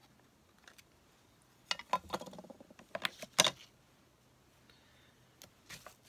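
Plastic case of a black dye ink pad being handled and pried open: scattered clicks and short rattles, with one sharp snap about three and a half seconds in.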